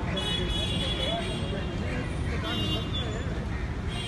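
Street ambience: a steady rumble of traffic with people's voices talking in the background.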